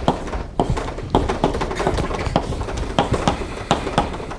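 Chalk tapping and scratching on a blackboard as a formula is written: an irregular run of sharp taps, a couple each second.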